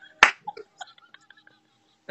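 A single sharp finger snap about a quarter second in, followed by a few faint soft clicks.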